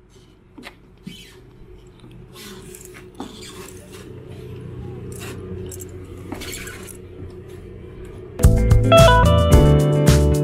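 A boat's engine running with a steady low hum, with scattered knocks and footsteps as people step aboard, slowly getting louder; about eight and a half seconds in, guitar background music starts loudly over it.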